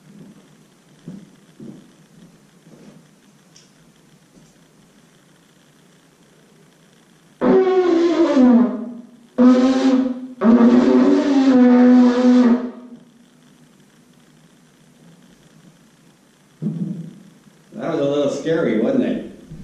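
A trumpet blown three times: a first note that slides down in pitch, a short second note, and a longer third note held about two seconds. Before the notes there are only a few faint knocks.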